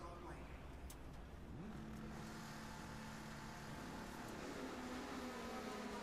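Drag-racing motorcycle engines running faintly at the start line. About a second and a half in, one engine revs up and then holds a steady pitch.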